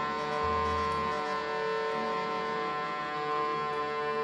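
Acoustic ensemble music: a steady held drone with many overtones runs without a break, with a low tone under it for about the first second.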